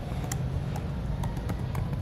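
Computer keyboard keys clicking a few times, irregularly, as text is typed, over a steady low rumble.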